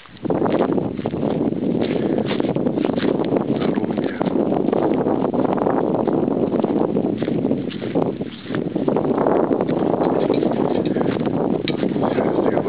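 Wind buffeting the camera microphone, with a steady, loud rumble and rustle that eases briefly about two-thirds of the way through. The soft knocks of footsteps on dry ground come through it.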